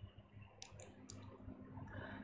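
Near silence: a few faint, short clicks over a faint steady low hum.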